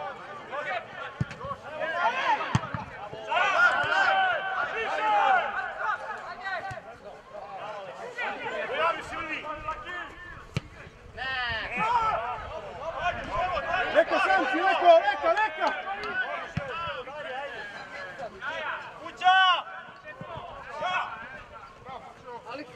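Shouted calls and voices from footballers and spectators during a match, rising and falling as play goes on. A few brief thuds cut in among them.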